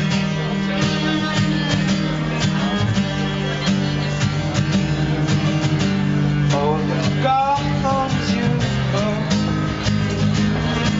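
Acoustic guitar strummed in a steady rhythm, played live. About seven seconds in, a short melodic line slides up and down over the chords.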